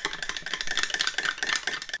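Small plastic spoon stirring candy powder and water in a plastic kit tray, a rapid run of scraping clicks, many strokes a second.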